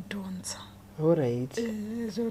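Speech only: a woman talking, with one falling, drawn-out syllable about a second in.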